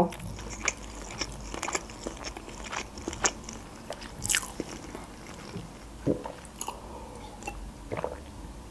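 Close-miked chewing of a mouthful of sushi roll: quiet, irregular mouth clicks and small crunches, with a sharper click about four seconds in.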